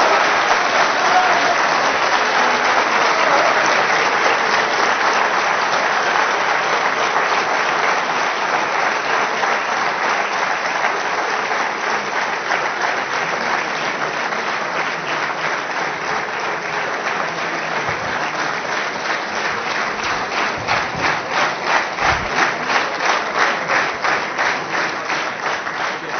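A large audience applauding. The clapping falls into a steady, rhythmic beat of about two to three claps a second in the last several seconds.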